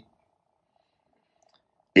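Near silence in a pause between spoken phrases, with only a very faint steady hum; a man's voice resumes speaking right at the end.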